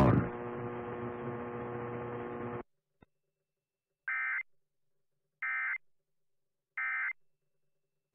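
A steady buzzing hum that cuts off about two and a half seconds in, then the Emergency Alert System end-of-message signal: three identical short data bursts about a second and a half apart, closing the weekly test.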